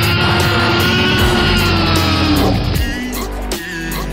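Loud music without singing, overlaid with a long sustained sound whose pitch rises and then falls; it breaks off about two and a half seconds in, leaving lighter music.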